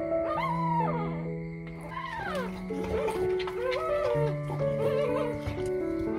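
Background music with held notes, over a Rottweiler whimpering in several short whines that each rise and fall in pitch.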